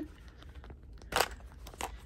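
Small plastic organizer case being opened, its magnetically closing lids coming apart with a few sharp plastic clicks, the loudest a little past halfway and another near the end.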